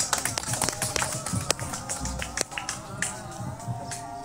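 Scattered hand clapping from a group of people, thinning out after about two and a half seconds, over a faint wavering musical tone.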